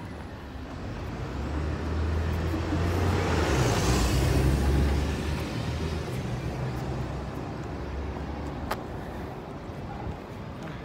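A car driving past close by: engine and tyre noise swells to a peak about four seconds in, then fades away.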